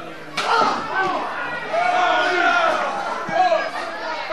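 A single sharp smack of a blow landing in a wrestling ring, about half a second in, amid the shouting voices of a small crowd in a hall.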